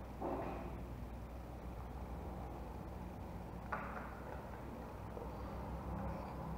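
Faint handling of a small plastic female plug as its housing is opened, with one sharp click a little past halfway.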